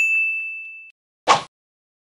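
A single high-pitched ding sound effect that rings and fades out over about a second, followed a moment later by one short, sharp burst of noise.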